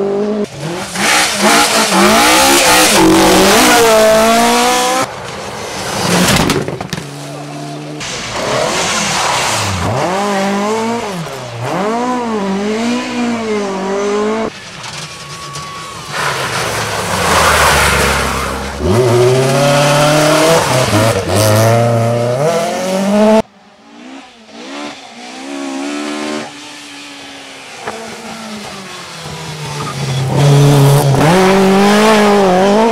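Rally cars at full speed on a tarmac stage, engines revving hard and rising and falling in pitch through gear changes and lifts off the throttle. Several separate passes by different cars, each breaking off suddenly, with a quieter stretch late on.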